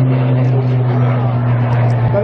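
Propeller aircraft engine drone: one steady low tone holding even, with no rise or fall in pitch.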